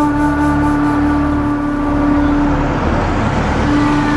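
Background score of a held flute-like note over a low bed. About two and a half seconds in the note drops out while a rush of noise swells and fades, and the note returns just before the end.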